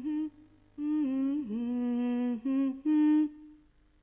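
A voice humming a slow, wordless melody in long held notes that glide from one to the next. It breaks off briefly about half a second in, and the last note fades out near the end.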